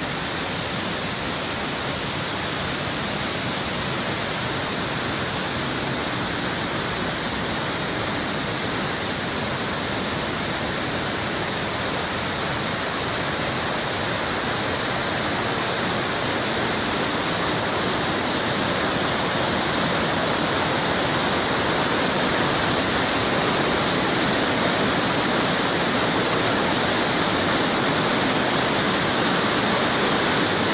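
Steady rush of river water over rapids, an even roar that grows slowly louder.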